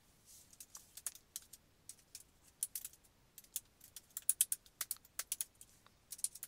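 Typing on a computer keyboard: a run of irregular key clicks as an email address is typed, coming fastest in the second half.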